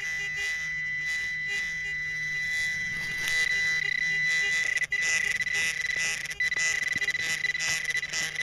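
Handheld metal-detecting pinpointer probe giving a steady high-pitched electronic buzz as it is worked through loose dirt in the hole, the alert that it is close to a buried metal target, here a Civil War minié ball. Light scraping of dirt comes and goes in the second half.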